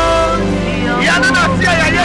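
A man singing a worship song into a handheld microphone over steady keyboard backing: a held note that ends about half a second in, then sliding, melismatic phrases from about a second in.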